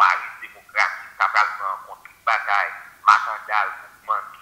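Speech played from a phone's speaker into a microphone: a talking voice that sounds thin and tinny, with no low end.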